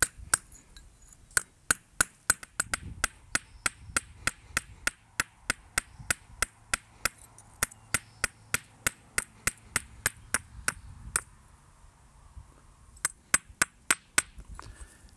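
Hand-held hammerstone striking a rusty iron nail laid on a flat stone, sharp stone-on-metal clicks at about three a second, cold-hammering the nail flat into a blade as the rust flakes off. The strikes stop for about two seconds near the end, then a few more follow.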